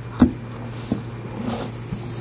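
A cardboard laptop box being pressed shut by hand: one sharp knock about a quarter second in and a lighter tap just before the one-second mark, over a steady low hum.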